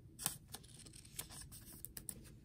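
Faint plastic rustling with a few light clicks: a baseball card being slid into a soft clear plastic sleeve.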